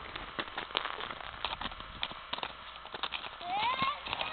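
Footsteps crunching irregularly in wet snow and slush. Near the end a child's voice gives one high cry that rises in pitch as he drops into the snow.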